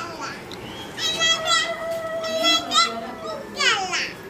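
Children's voices in a small room: a child holds one long high-pitched note for about two seconds, starting about a second in, amid other children's chatter, and a falling voice follows near the end.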